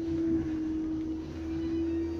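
A steady hum held at one pitch over a low rumble.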